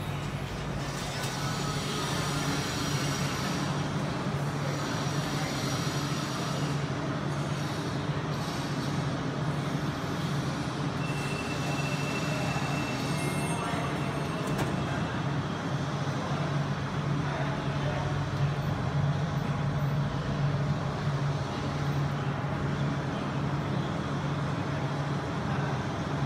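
Steady low mechanical hum, with a brief high-pitched tone about eleven seconds in and a short knock a few seconds later.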